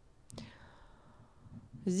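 A pause in a woman's narration: faint room tone, with a short click and a brief breathy vocal sound about a third of a second in. She starts speaking again right at the end.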